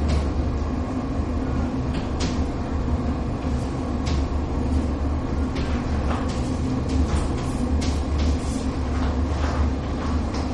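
Chalk writing on a blackboard: scattered short taps and scratches, over a steady low hum.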